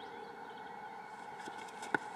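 Cricket bat striking the ball: one sharp crack near the end, with a fainter tick shortly before it.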